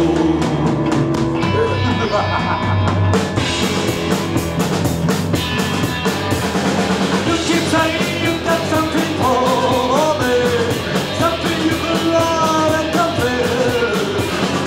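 Live rock band playing: drums, bass guitar and electric guitar, with a male singer. The band gets fuller and brighter about three seconds in.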